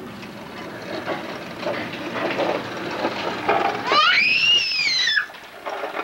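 Plastic toy push vacuum rolling and rattling over a concrete sidewalk. About four seconds in, a toddler gives one high squeal that rises and then falls.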